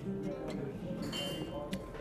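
Quiet background music with steady held notes.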